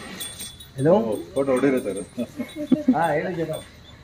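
People's voices talking close by, with a light, high jingling of small bells running underneath and a single sharp click about two and a half seconds in.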